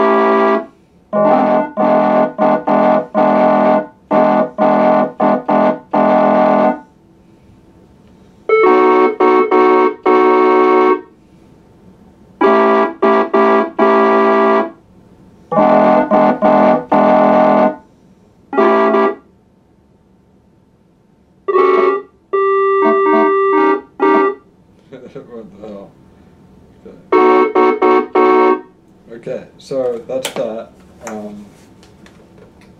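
Organ-voiced chords played on a MIDI keyboard. The chords are held in groups lasting a few seconds, each group cutting off abruptly, with pauses between them. A run of short separate notes comes a little past the middle.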